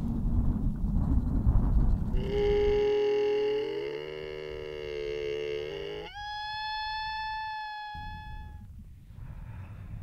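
Bactrian camel giving a long moaning call that climbs in small steps, then jumps to a higher, steadier pitch and holds it before fading. Low rumble of wind on the microphone comes before the call.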